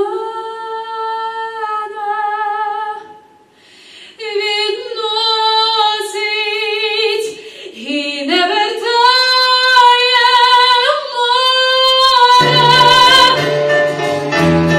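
A woman singing a pop ballad into a microphone, holding long notes with vibrato and sliding up into a higher sustained note about eight seconds in, with almost no accompaniment. Near the end an instrumental backing with low bass notes comes in under her voice.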